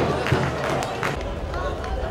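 Live pitch-side sound of a football match: shouting voices from players and the small crowd, with scattered sharp knocks and one loud thump right at the start.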